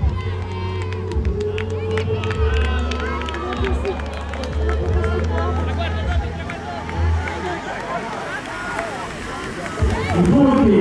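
Spectators shouting and cheering, many voices overlapping, as skaters sprint for the finish of an inline speed-skating race, over a low rumble that comes and goes.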